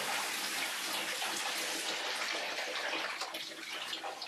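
Shower water running over a person's head and shoulders, a steady hiss of spray that thins out in the second half into more separate splashes.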